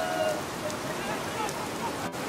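Heavy rain falling steadily, an even hiss throughout. A held call from a voice ends in the first half second, and faint voices sound under the rain.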